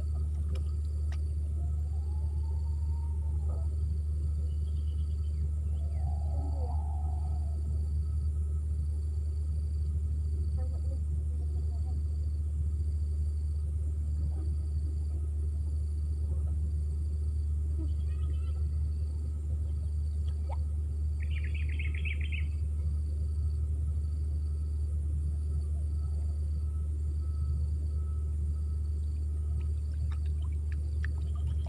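Steady low rumble outdoors, with a few faint bird calls: short rising-and-falling calls in the first few seconds and a brief burst of chirps about two-thirds of the way through.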